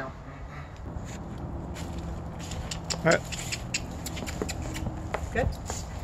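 Irregular hoof clops of a miniature horse stepping on pavement as she is led, over a steady low hum.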